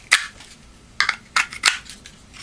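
Knife snapping in and out of a kydex sheath: four sharp plastic clicks, one just after the start and three close together in the second half, the sheath's retention catching and releasing the blade.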